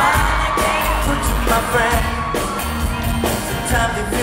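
Live pop music with singing, played through the concert PA and recorded from the audience: a steady pulsing bass beat under synths and vocals.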